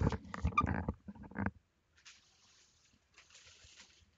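Low, indistinct mumbling from a person for about the first second and a half, then near silence.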